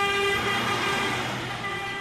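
Car horn held in one long, steady blast, easing slightly near the end.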